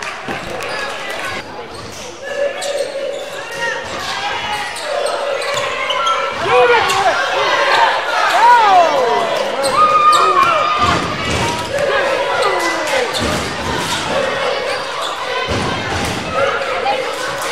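Basketball game in an echoing gym: the ball bouncing on the hardwood court, sneakers squeaking, and players and spectators calling out, busiest and loudest in the middle as play reaches the basket.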